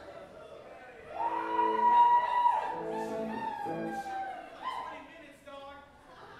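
Live band instruments playing a few loose, held notes with downward pitch slides, the loudest near the second mark, over bar chatter, not yet a full song.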